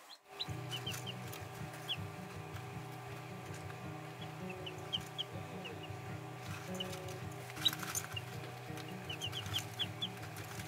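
Young chicks peeping: short, high chirps in scattered runs, with a quicker flurry near the end. Steady background music with low sustained notes plays underneath.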